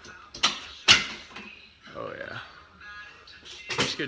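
Two sharp knocks about half a second apart, then a short sound whose pitch rises and falls, and more knocks near the end.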